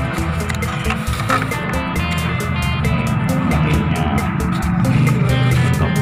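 Background music with a steady beat and sustained melodic notes.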